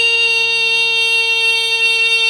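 Music from an old Korean pop record: an electronic organ holds one chord, steady and unchanging, with no singing.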